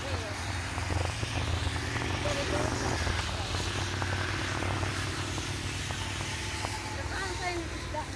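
Motorcycles riding past on a road, a steady low engine drone.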